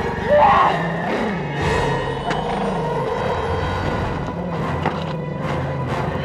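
Suspenseful horror-film score: a sustained low droning chord under a steady higher tone, with a short high sound about half a second in and a few sharp hits near the end.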